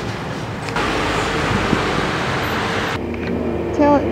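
Road traffic noise from passing cars, an even rush that grows louder about a second in and cuts off abruptly near the end, where a voice begins.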